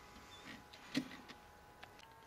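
A few faint clicks and light knocks, the loudest about a second in, over a faint steady hum.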